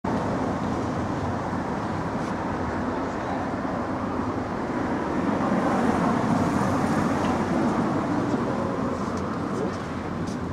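Street traffic noise: a steady rumble of passing cars that swells a little around the middle.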